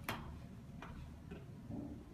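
Footsteps on a bare subfloor with the carpet pulled up: a few sharp clicking steps, the first the loudest.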